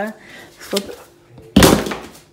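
A plastic pancake shaker bottle dropped onto a tiled floor, hitting it with one loud knock near the end.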